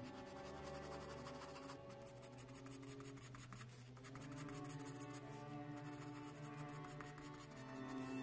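Graphite pencil shading on sketch paper in quick, short scratching strokes, over background music with held notes.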